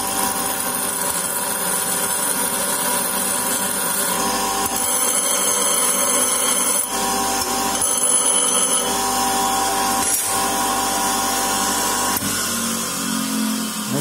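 Small Kraton electric bench grinder running, with an old steel wrench pressed against the spinning abrasive wheel: a steady motor hum under a high grinding hiss that rises and falls as the wrench is pressed and moved. The grinder runs without runout on its wall mount.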